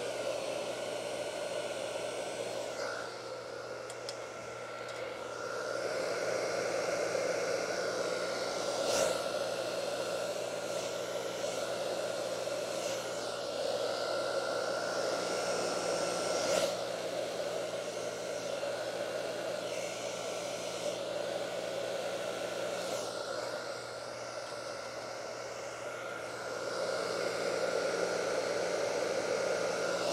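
Hand-held blow dryer running with a steady rushing noise and a thin whine, dipping in loudness twice for a few seconds.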